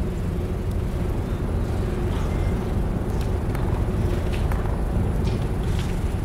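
Steady low rumble with a faint steady hum and a few faint clicks, without speech.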